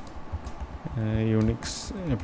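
Typing on a computer keyboard: a quick run of key clicks, with a man's voice briefly over it about a second in.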